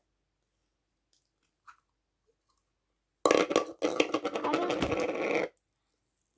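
Near silence for about three seconds, then a loud burst of dense crackling and squelching lasting about two seconds as a plastic tub of clear slime is opened and the slime handled.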